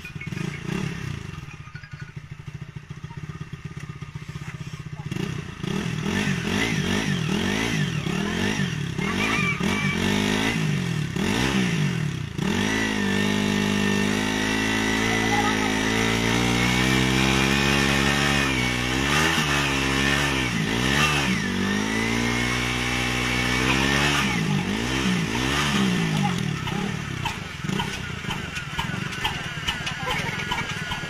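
Motorcycle engine revving up and down under load, its rear wheel driving a belt that spins the flywheel of an old black diesel engine to start it. It is quieter for the first few seconds, then from about five seconds in the revs rise and fall again and again.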